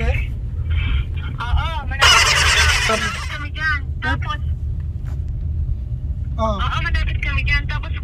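Steady low rumble of a car's cabin while driving, with people's voices over it. About two seconds in, a loud burst of noise lasts about a second.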